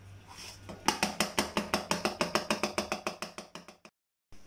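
Cling film being pulled off its roll: a rapid, even run of sharp clicks, about ten a second, that fades toward the end and then cuts off.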